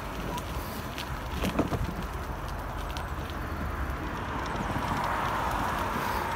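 Wind rushing over a phone microphone and tyre noise from a mountain bike towing a loaded trailer as it rolls downhill on pavement, with a few rattling clicks about a second and a half in. A hiss swells over the second half.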